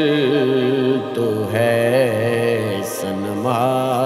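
Devotional vocal music: a male voice holding long, wavering sung notes over a steady low vocal drone, with a fresh phrase rising in near the end.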